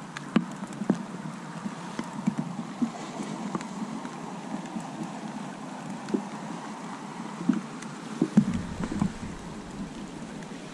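Steady heavy rain falling, with scattered drops ticking close by. A low rumble joins in about eight seconds in.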